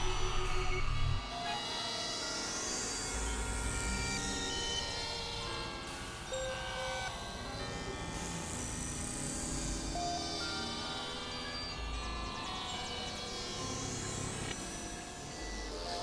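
Experimental electronic drone music: layered sustained synthesizer tones with high sweeping tones that rise and fall roughly every five seconds. A loud low bass drops out about a second in.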